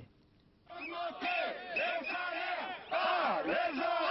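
A crowd of street demonstrators shouting slogans together. It starts about half a second in.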